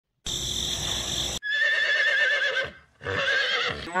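Horse whinnying twice, each a wavering, quavering call of about a second, after a short hissing noise at the start.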